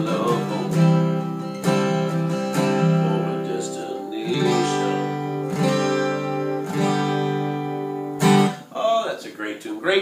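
Steel-string acoustic guitar strummed, the chords ringing on between strokes that come about once a second. A last chord is struck about eight seconds in, and then a man starts speaking.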